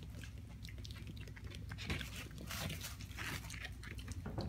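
Mini piglet rooting and mouthing at cloth with its snout: short, irregular sniffing and chewing sounds, the strongest a little over halfway through.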